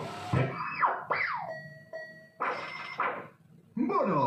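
Electronic sound effects from a Spanish slot machine marking a bonus win: quick tones sliding down and up, a couple of short held beeps, and a short burst about halfway through, with a brief pause before another falling sweep near the end.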